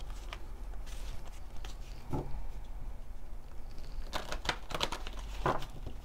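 A deck of oracle cards being handled and shuffled: scattered light card clicks and slaps, with a run of quick clicks about four seconds in.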